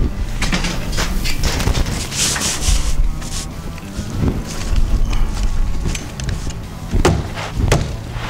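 Steel lath mesh rubbing and scraping against the house wrap as it is pressed flat onto the wall, with sharp clacks of a stapler driving staples to tack it in place, two loud ones close together near the end.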